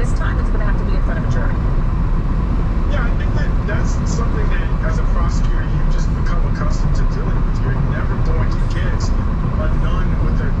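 Steady low rumble of tyres on a wet freeway, heard from inside a moving car, with muffled talk from a news broadcast playing over it.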